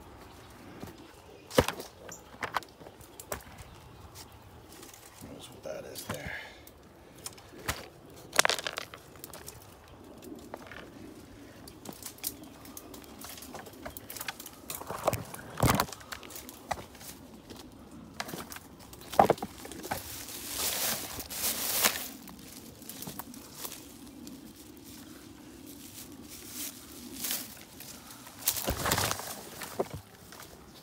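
Footsteps crunching and scuffing through dry leaf litter and twigs while climbing a steep wooded slope, with irregular sharp cracks and rustling bursts as brush is pushed aside. A faint steady low hum sits under it from about a third of the way in.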